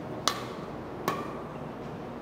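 Badminton racket striking a shuttlecock twice, about a second apart, each hit a sharp crack with a short ringing ping from the strings.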